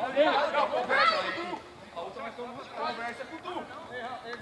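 Several voices of footballers and spectators shouting and chattering, none close to the microphone, loudest in the first second and a half.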